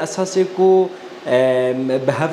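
Only speech: a man talking, who draws out one long steady vowel in the second half.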